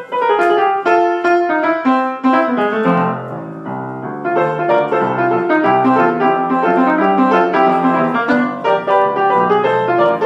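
Piano played in a rock style with both hands: a falling run of notes in the first few seconds, a brief softer moment about three seconds in, then a steady rhythm of chords over a bass line.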